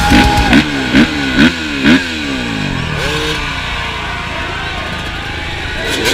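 Dirt bike engine blipped four times in quick succession, each rev rising sharply and falling back, then running at a steady lower note with a couple of lighter throttle swells.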